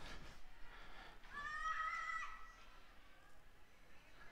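A girl softball fielder's big cry from first base: one high-pitched yell held for about a second, starting a little over a second in, as the batter shows bunt.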